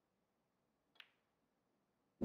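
A single sharp click of a snooker shot about halfway through, otherwise near silence.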